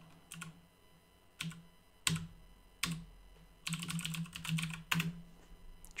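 Typing on a computer keyboard as a web address is entered: a few separate keystrokes, then a quicker run of keys near the end.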